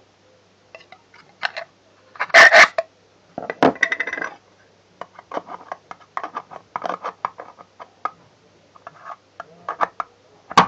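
A flathead screwdriver working the hole in a metal jar lid to widen it, in metallic clicks and scrapes. The two loudest scrapes come about two and a half and three and a half seconds in, followed by a run of smaller, quicker ones.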